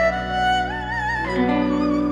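Background music: a slow melody with vibrato, shifting pitch a few times, over sustained low notes.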